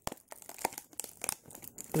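Clear plastic toy packaging crinkling as it is handled, a run of irregular sharp crackles.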